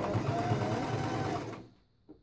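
Domestic sewing machine stitching at a steady speed, the needle going in a rapid even pulse, then stopping about a second and a half in.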